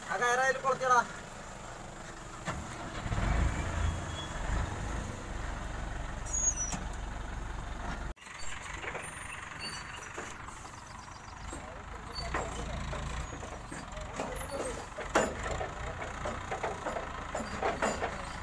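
A heavy diesel engine running at low speed, with men's voices in snatches over it. The sound breaks off abruptly about eight seconds in and then picks up again.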